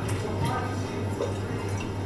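Green pea sherbet pouring from a bottle into a small metal jigger, a faint trickle and drip, over a steady low hum.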